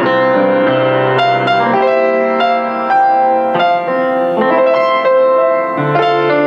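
Offenbach PG-1 baby grand piano being played: a melody over sustained chords.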